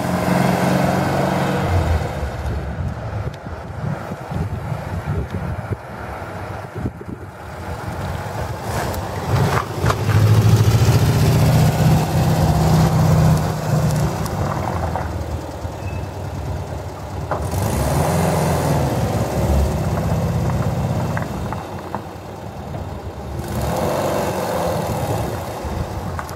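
Air-cooled flat-four engine of a 1974 VW Beetle 1303 Cabriolet running as the car drives slowly by. Its note rises and falls with the throttle and is loudest about ten to fourteen seconds in.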